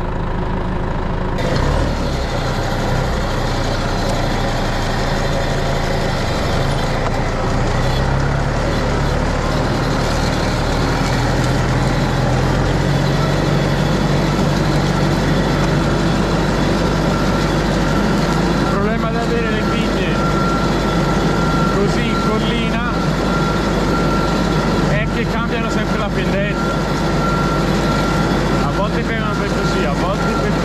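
New Holland 4040F tractor's diesel engine running steadily while driving a vineyard row with a hydraulic vine-canopy trimmer working. The engine speeds up about ten seconds in, and a steady high whine then sets in and grows stronger.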